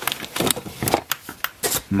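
Handling noise as computer accessories, cables and a spiral-bound manual are rummaged through and picked up: irregular clicks, taps and rustles.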